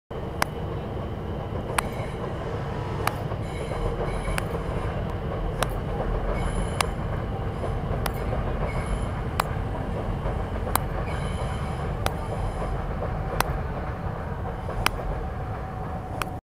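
Steady low rumble with a sharp click about every second and a third, and bouts of high-pitched squealing now and then.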